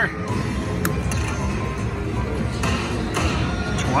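Aristocrat Lightning Cash Sahara Gold slot machine playing its hold-and-spin bonus music and sound effects over casino floor noise, with several short chimes as the reels stop and new coins land, resetting the free spins.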